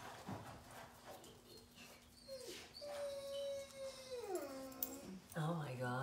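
A dog whining: one long high whine of about two seconds that holds steady, then slides down in pitch near the end.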